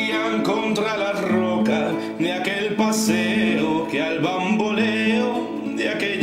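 A habanera played on strummed acoustic guitar, with a voice singing long, wavering notes.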